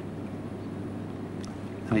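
Steady background hiss with a low hum, the room tone of a live broadcast feed, during a pause in a man's speech; he starts speaking again right at the end.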